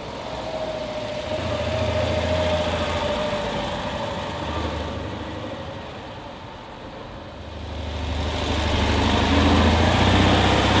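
1959 Citroën 2CV's 425 cc air-cooled flat-twin engine as the car drives by: it swells about two seconds in and fades, then grows louder again as the car comes close near the end.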